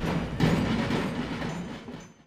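Marching drums in a street procession beating, with one strong stroke about half a second in. The sound then fades away toward the end.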